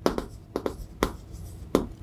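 Chalk writing on a chalkboard: a handful of irregular sharp taps and short scrapes as numbers are written.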